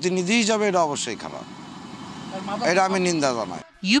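A man speaking Bengali into a microphone. A motor vehicle runs past in the background, heard most plainly in a pause in his speech from about one to two and a half seconds in.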